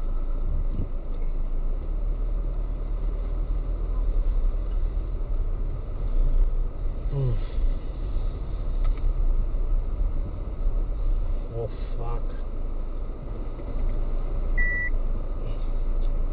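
A car's engine and road noise heard from inside the cabin while driving slowly: a steady low rumble. A short electronic beep sounds once near the end.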